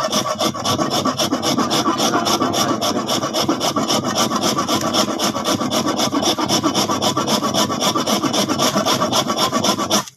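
A hard lump of baked salt being grated into powder by hand, rasping in quick, even back-and-forth strokes that stop abruptly at the end.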